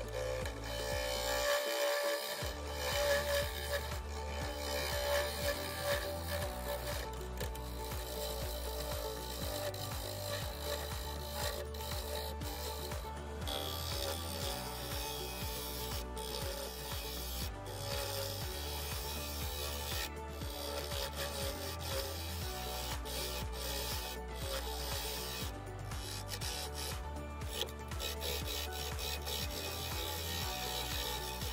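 A walnut bowl spinning on a wood lathe while a gouge cuts into its inside, giving a continuous scraping, hissing cut. Background music with a steady repeating bass line plays underneath.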